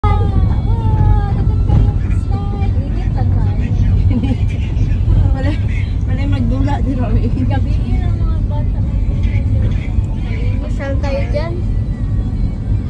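Steady low rumble of a moving vehicle's engine and tyres, heard from inside the vehicle, with people's voices talking over it on and off.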